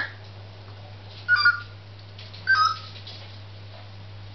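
Pet parrot giving two short calls about a second apart.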